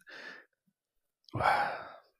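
A man sighing, a breathy exhale into a close microphone, about a second and a half in, after a faint breath at the start.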